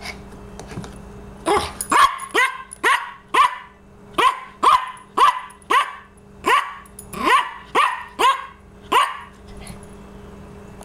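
Yorkshire terrier barking repeatedly, a run of about fourteen short, high barks at roughly two a second, starting about a second and a half in and stopping near the end.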